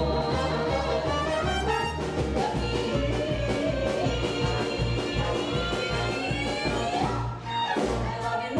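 Live band playing an upbeat, jazzy dance number with a steady bass line and horns. About seven seconds in the music briefly drops, then comes back in on a loud accent.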